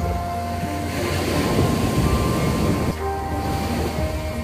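Surf washing up a sandy beach: a wave's foamy wash swells and is loudest from about one to three seconds in, over soft background music.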